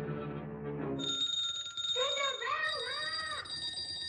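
A held low orchestral chord ends about a second in, when a row of small wall-mounted servants' call bells starts ringing continuously. From about two seconds in, a voice calls out over the bells in long, wavering cries.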